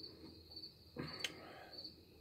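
Crickets chirping faintly in a steady run of short, high repeating chirps, with a soft click about a second in.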